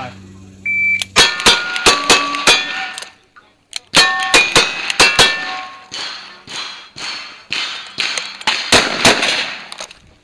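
Shot-timer start beep, then two rapid strings of about five single-action revolver shots on steel plates, each hit followed by the ring of the steel. After a short gap come shotgun shots at knockdown targets, the loudest near the end.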